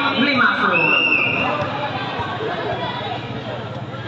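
Spectators' voices talking and calling out courtside, with one high held note about a second in.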